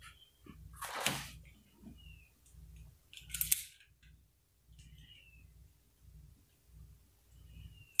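Quiet handling of a revolver, with a short sharp click about three and a half seconds in, and a brief rustle about a second in, over a faint low hum.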